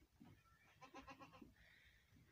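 A faint, short bleat from a farm animal, about half a second long, near the middle.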